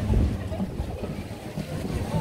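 Wind buffeting the microphone as an irregular low rumble, with faint voices of people nearby.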